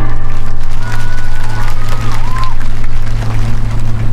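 Live orchestral accompaniment holding a low sustained note while a concert audience cheers and applauds, between the singer's phrases.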